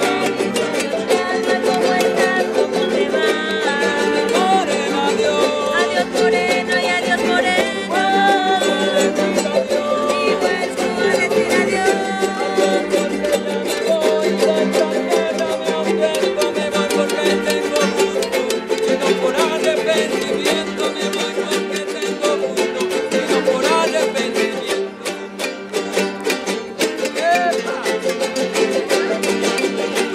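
Several small ukulele-sized guitars strummed together, playing lively festive music, with a voice singing along over them.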